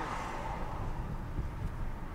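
Steady low rumble of a car heard from inside the cabin, the engine and road noise of a car being driven.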